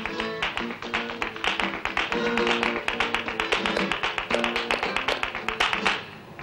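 Flamenco guitar playing an instrumental passage between sung verses of a flamenco song, with quick, dense percussive taps over steady chords.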